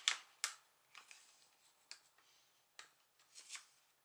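A plastic card worked under the plastic screen bezel of an Acer laptop, prying at its snap latches: a few faint, scattered plastic clicks and light scrapes.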